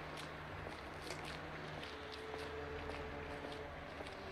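Footsteps on cobblestones, short scuffing steps about two to three a second, over a steady low hum.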